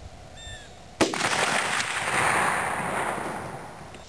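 A single shot from a Winchester 94 lever-action rifle in .30-30, about a second in, followed by a long rolling echo that dies away over about three seconds.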